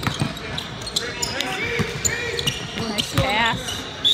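Irregular low thumps and knocks, several a second, with people's voices in the background.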